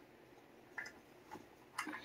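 Quiet room with three faint, short clicks about half a second apart, near the middle and end.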